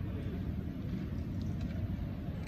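Steady low rumble of background room noise, with no distinct strike or click.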